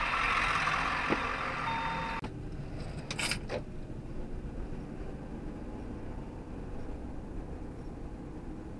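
Road and engine noise inside a moving car, recorded by a dash camera. A hissy stretch in the first two seconds gives way to a steadier low rumble, with one sharp click about three seconds in.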